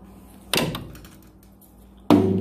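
A single hit on a drum about half a second in, ringing briefly as it fades.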